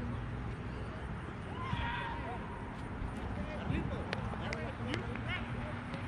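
Distant voices of players and spectators calling across an open soccer field over a steady outdoor background, with higher-pitched shouts now and then. A few faint sharp knocks come between about four and five seconds in.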